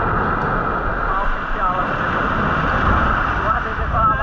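Sea surf breaking and washing up a sand beach in a steady, loud rush. Faint voices of people in the water come through it.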